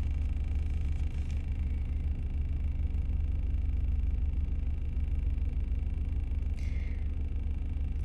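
Steady low rumble of a car heard from inside its cabin, with a brief faint higher sound near the end.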